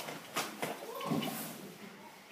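A few sharp clacks from children's practice nunchaku being swung, three of them in the first second or so.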